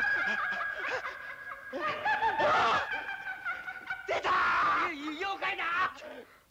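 Eerie cackling laughter mixed with frightened cries and shouts, in loud wavering bursts. A high steady tone holds under it for the first few seconds, then fades.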